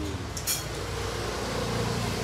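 Steady low rumble of street traffic, with a brief sharp hiss about half a second in.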